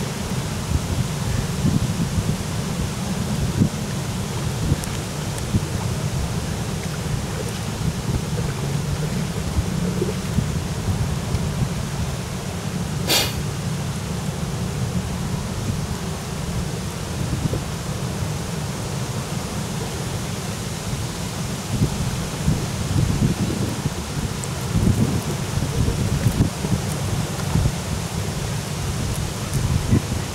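Wind buffeting the microphone: a steady low rumble that rises and falls in gusts, over a faint hiss of open water. A brief crackle about halfway through.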